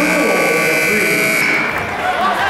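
Gym scoreboard buzzer sounding the end of the quarter: one long, steady high tone that cuts off near the end, over voices in the gym.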